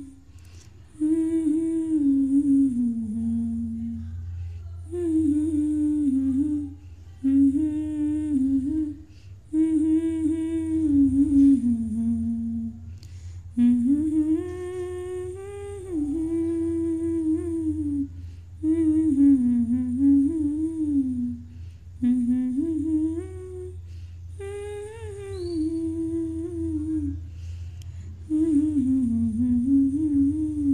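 A woman humming a song's melody without words, in phrases of two to four seconds with short pauses between them.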